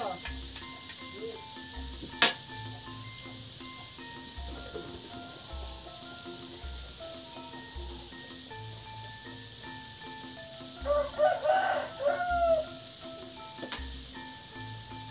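Food sizzling softly in a wok on a wood-fired clay stove, under background music with a steady beat; a sharp clink about two seconds in. Near the end a rooster crows loudly.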